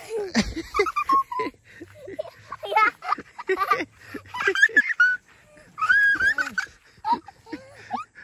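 Excited voices of an adult and a young child talking and calling out in quick bursts with short pauses.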